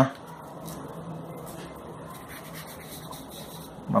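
Faint, soft rubbing of toilet paper passed over a graphite pencil drawing on paper, blending the shading.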